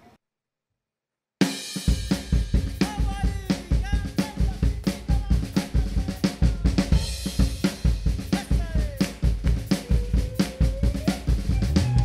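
A live rock band with drum kit, electric guitar and bass guitar plays an instrumental song intro with a steady drum beat, starting suddenly after about a second and a half of silence.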